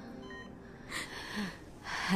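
A woman's sharp tearful intake of breath about a second in, followed by a brief low sob. Faint short high electronic beeps sit underneath.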